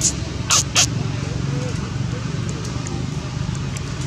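Steady low background rumble, with two short, sharp crackling sounds about a quarter of a second apart.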